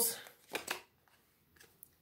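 Tarot cards handled as a card is pulled from the deck: two short, quick card snaps about half a second in.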